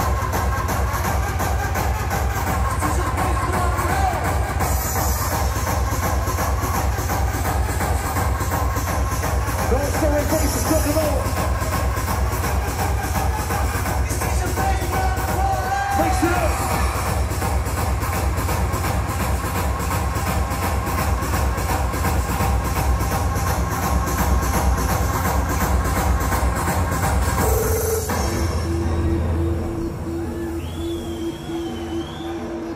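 Hardcore (gabber) techno played loud over a big club sound system, driven by a fast, steady, distorted kick drum with heavy bass. About two seconds before the end the beat breaks down, leaving a held tone.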